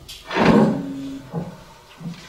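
A short, loud, breathy burst of a woman's voice close to a handheld microphone, about half a second in, followed by a brief softer sound.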